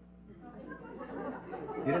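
Studio audience chuckling and murmuring, faint at first and growing louder; a man begins speaking at the very end.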